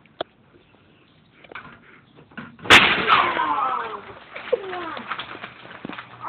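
A sudden loud thump about three seconds in, followed by a person's falling-pitch groans.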